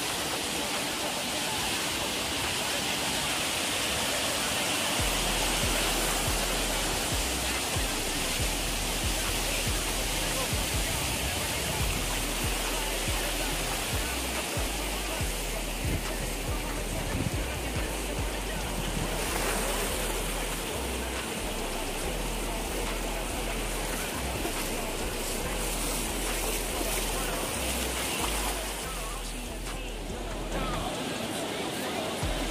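Surf washing in at the water's edge, a steady rush of water noise, under background music whose deep bass line comes in about five seconds in.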